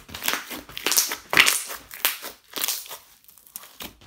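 Hands kneading, stretching and squeezing a large lump of clear slime mixed with crushed eyeshadow, giving an irregular run of sticky squishing and crackling noises, the loudest about a second and a half in.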